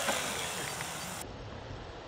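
Faint whir of a radio-controlled monster truck on dirt, fading as it comes to a stop. About a second in, the sound drops abruptly to a quieter, duller outdoor background.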